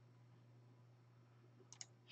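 Near silence with a low steady hum, then two faint computer mouse clicks in quick succession near the end.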